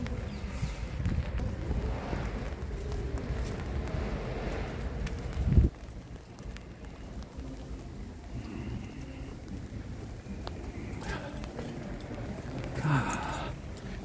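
Wind buffeting the microphone, a loud low rumble that stops suddenly about five and a half seconds in, leaving a quieter outdoor background with a brief voice near the end.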